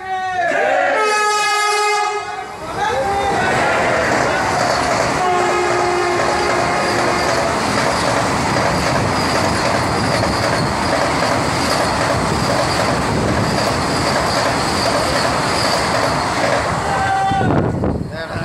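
Vande Bharat Express electric train set sounding its horn for the first couple of seconds, then rushing through the station at speed: a long, steady roar of wheels and air as the coaches pass close by, which drops away near the end as the last coach clears.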